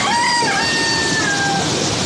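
A rooster crows once, a long call that ends about three-quarters of the way through, over the steady rush of a river in flood.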